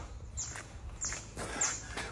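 Small birds chirping: a few short, high chirps falling in pitch, about a second in and again shortly after, over a faint low rumble.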